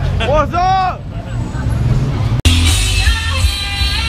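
A man's loud, drawn-out calls over street crowd noise and traffic rumble, then an abrupt edit cut about two and a half seconds in, after which music plays.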